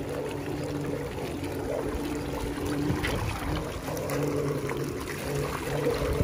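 Aiper cordless robotic pool cleaner running in shallow water, a steady motor hum under the splash and churn of the water it pumps up off its top. The splashing grows louder near the end.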